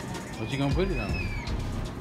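A short wordless sound from a person's voice, and a thin, high, whistle-like tone that rises slightly and falls back over less than a second, over steady background noise.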